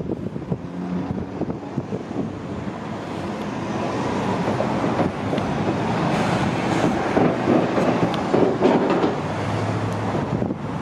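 City street traffic noise, with a passing vehicle growing louder to a peak near the end and then easing off.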